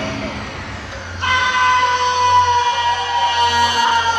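A female singer belting one long high note into a microphone over a house dance backing track with a steady bass pulse. The note comes in about a second in and is held for about three seconds, sagging slightly in pitch.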